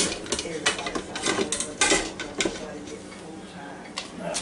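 Clanks and knocks of the Ninja Foodi's metal cooking basket being gripped with silicone grips and lifted out of its inner pot. The sharp knocks come in a quick run over the first two and a half seconds, then it goes quieter.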